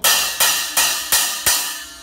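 Saluda Earthworks 11-inch-over-14-inch heavy crunch cymbal stack struck on the top cymbal with a drumstick: five even hits, about three a second, each a short crash that dies away fast.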